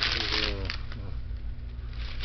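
Drinking from an aluminum can of Colt 45 malt liquor: a short gulping sound in the first second and a light metallic clink of the can as it comes down, over a steady low hum.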